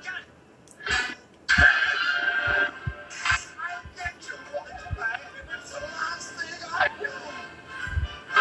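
Film trailer soundtrack played through a television's speaker and picked up across a small room: music with voices and short thuds of sound effects, coming in loud after a brief lull in the first second.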